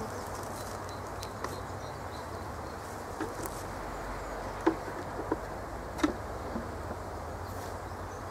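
Honey bees buzzing around a hive in a steady low hum, with a few light clicks of the hive being handled past the middle.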